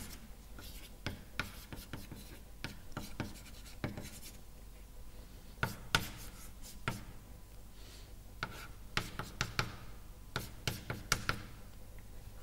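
Chalk writing on a blackboard: a string of short taps and scrapes as letters, an arrow and lines are drawn, coming in quick clusters around the middle and again near the end.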